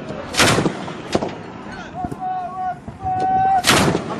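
Heavy gun mounted on a pickup-truck technical firing: two loud single shots with a rolling echo, one just after the start and one near the end, and a sharper crack about a second in. Between the shots men give drawn-out shouts.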